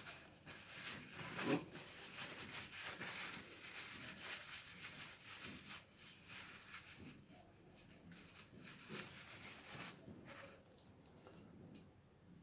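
Faint rustling and crinkling of a paper towel rubbed over a freshly greased ball bearing, wiping away the excess grease that has squeezed out; it grows quieter about halfway through.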